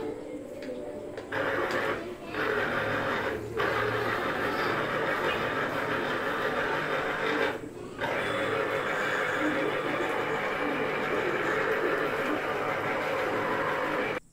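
Electric citrus juicer's motor running as lime halves are pressed onto its spinning reamer. It drops out briefly a few times as the pressure comes off between halves.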